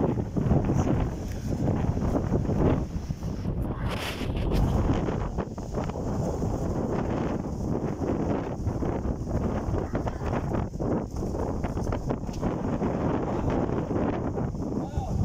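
Wind buffeting the microphone over the steady rush of a thin waterfall splashing onto rock, with a brief brighter hiss about four seconds in.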